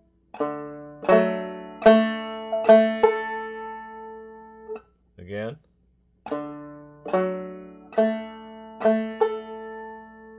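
Five-string banjo played clawhammer style: a couple of melody notes struck with the finger, then a basic strum, each note ringing and fading. The same short phrase is played twice with a brief pause between.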